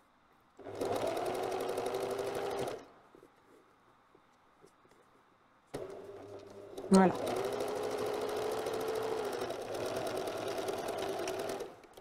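Pfaff Select 4.2 domestic sewing machine stitching a curved seam through wool cloth. It runs steadily for about two seconds, stops for about three, then runs again for about six seconds, starting softly and picking up speed about a second after it restarts.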